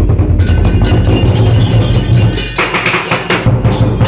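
Lion dance percussion band playing: a big drum beating rapidly under clashing cymbals. Past the middle the drum drops out for under a second while the cymbals keep ringing, then it comes back in.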